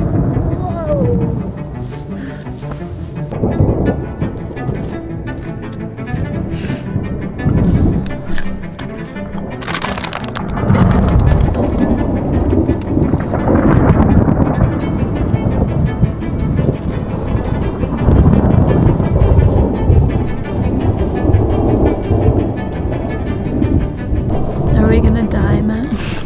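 Low rumbling from the erupting Volcán de Fuego and a thunderstorm rolling in. A sharp crack comes about ten seconds in, then heavy rumbling in waves, under background music with low bowed strings.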